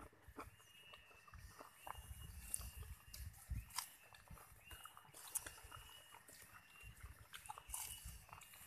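Faint close-up sounds of people eating rice with their hands off banana leaves: chewing and mouth noises, with small irregular clicks and soft low thumps.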